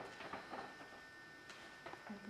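Quiet room with a steady faint electrical hum and a few soft handling clicks.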